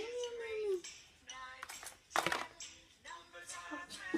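A voice sings a long 'yum' that glides up in pitch, ending a children's counting song. Music and voices follow, with one sharp click about two seconds in.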